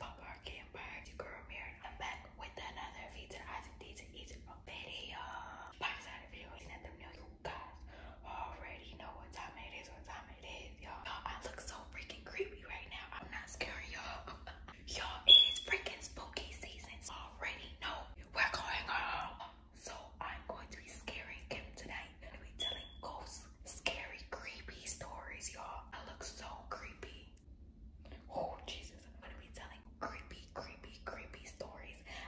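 A woman whispering steadily, with short pauses. About halfway through comes one brief, sharp high sound, the loudest moment, and a fainter one follows later.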